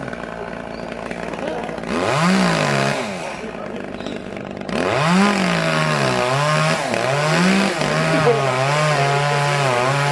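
Two-stroke chainsaw idling, revved briefly about two seconds in, then revved again from about five seconds in and held, its pitch wavering up and down.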